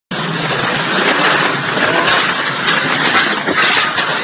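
Typhoon wind and heavy driving rain, a loud, steady rushing noise.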